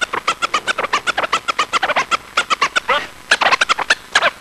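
A DJ scratching a record on a turntable: a rapid run of short back-and-forth strokes on a pitched sample, each a quick chirp sliding up or down in pitch, about six a second, with a couple of brief pauses.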